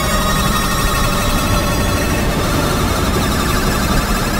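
Dense electronic sound texture: many steady high tones layered over a thick noisy low rumble, holding at an even level throughout.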